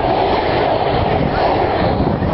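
Steady jet engine noise from a formation of four jet aircraft flying past.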